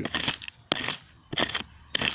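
A small hand pick striking into dry, stony soil: about three sharp strikes, roughly one every two-thirds of a second, each with a short clink of stones.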